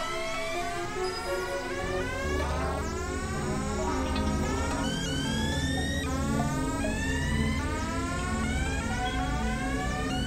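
Experimental electronic synthesizer music: many overlapping rising, siren-like pitch sweeps over a low pulsing drone that fills in about two seconds in.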